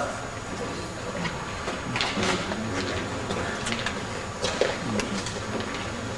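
Gym hall room noise with a few faint, scattered knocks and footsteps on the court floor.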